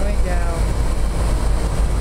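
A steady, loud low rumble and hum that runs without change, with a woman's brief words near the start.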